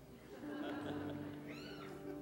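A soft sustained note from the worship band holds underneath. Near the end comes one short high-pitched squeal that rises and falls.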